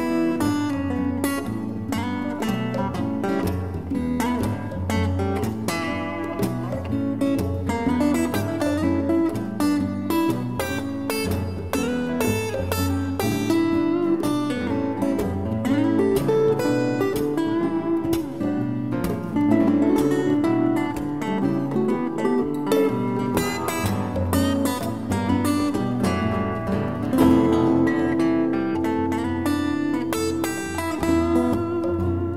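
Live band playing an instrumental break: strummed acoustic guitars and electric guitar over hand drums, with no singing.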